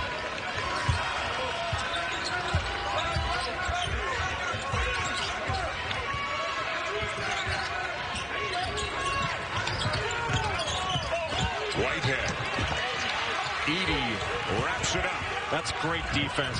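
Basketball dribbled on a hardwood court, with short thumps throughout, over the steady noise of an arena crowd. Short rising-and-falling sneaker squeaks come in, most of them in the last few seconds.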